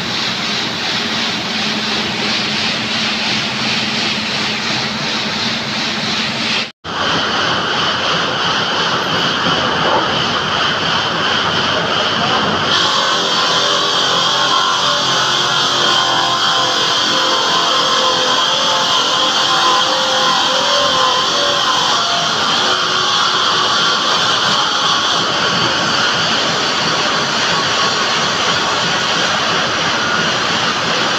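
Water-cooled circular stone-cutting saw running loud and steady while a stone slab is pushed through it. The sound breaks off for an instant about seven seconds in, and a steady high whine joins from about thirteen seconds in.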